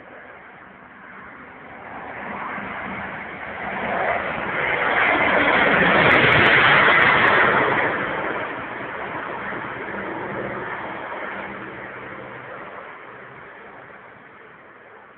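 Canadair water bomber's twin propeller engines in a low pass: the engine sound builds, is loudest about halfway through as the aircraft passes nearly overhead, then fades as it flies away.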